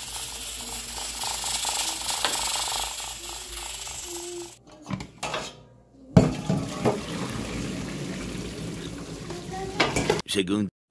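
Gas stove burner hissing under an aluminium steamer pot, then a sharp metal clank about six seconds in and a few lighter clinks of the pot and lid as the steaming pot is opened.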